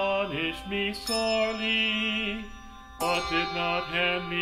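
A psalm verse chanted to a psalm tone: long held sung notes over sustained accompaniment chords, with new phrases starting about a second in and again at three seconds.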